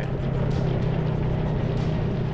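Off-road ATV engine running at a steady drone while driving a rocky trail, heard under background music.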